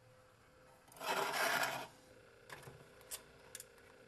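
Metal camp gear scraping across a workbench for under a second, followed by a few light clicks and taps.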